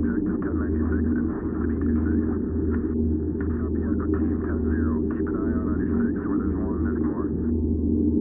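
Edited soundtrack music: a steady low drone with a thin, filtered layer of wavering, voice-like sounds above it.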